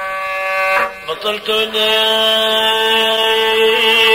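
One-string rababa (Bedouin spike fiddle) playing long held notes in ataba folk music. There is a short break with a few clicks about a second in, then a steady held note resumes.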